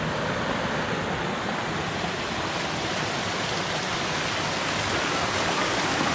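Small mountain creek cascading over rocks and a log, a steady rush of splashing water.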